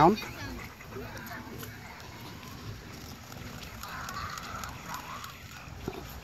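Outdoor background with faint, distant children's voices carrying from a playground, loudest about four seconds in. A single short knock sounds near the end.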